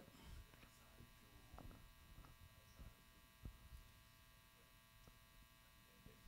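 Near silence: a faint, steady electrical hum and buzz, with a few faint soft knocks.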